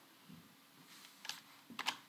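A few faint computer keyboard keystrokes, starting about a second in.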